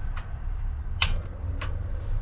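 A few sharp clicks from a portable butane camp stove being readied to light, one louder click about a second in, over a steady low rumble.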